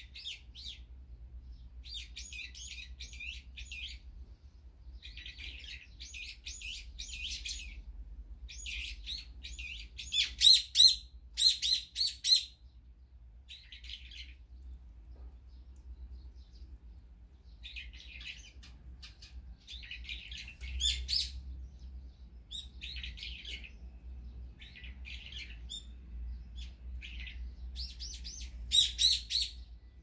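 Small songbirds chirping in quick bursts of calls, each burst a second or two long with short gaps between. The loudest, sharpest chirps come about ten to twelve seconds in and again near the end.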